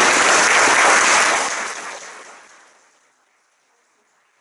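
Audience applauding, the clapping fading out steadily from about a second and a half in until it is gone about three seconds in.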